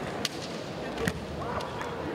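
Sounds of a kendo bout in a large hall: two sharp knocks about a second apart, from bamboo shinai and stamping bare feet on the wooden floor, over a steady hall murmur with distant voices.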